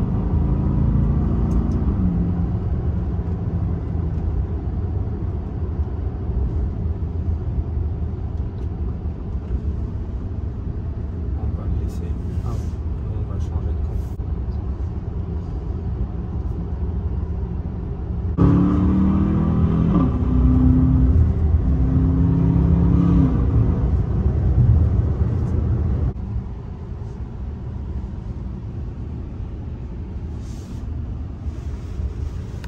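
Cabin sound of a moving Aston Martin DBX 707: a steady low rumble from the engine and the road. The rumble gets louder for several seconds past the middle, with a pitched note rising and falling, then drops back quieter near the end.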